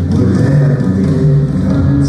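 Live rock band playing loudly in an arena, with held notes over a steady bass line, recorded from the audience.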